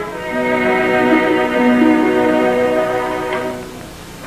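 Orchestral music with bowed strings holding sustained chords, fading away near the end.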